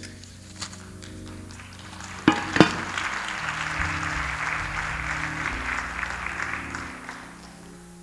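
Soft keyboard music of held, sustained chords. About two seconds in come two sharp knocks, then a round of applause that fades out near the end.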